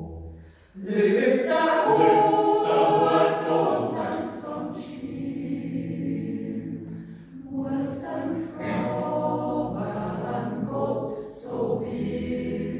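A mixed Swiss yodel choir of men and women singing unaccompanied, full sustained chords in a yodel song. The singing breaks off briefly between phrases, once about a second in and again past the middle and near the end.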